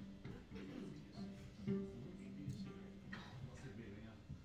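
Soft tuning and warm-up playing from a small acoustic string band between tunes. A bowed string holds one long low note for about two seconds, with a few scattered plucked notes around it.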